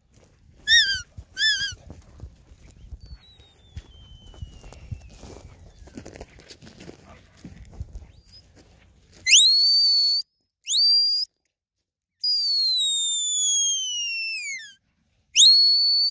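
Stock-dog handler's whistle commands. A couple of short notes come about a second in, then a series of loud, clean whistles in the second half: a rising note that is held, a short rising note, a long falling note, and another rising note near the end. A low rumble sits under the first half.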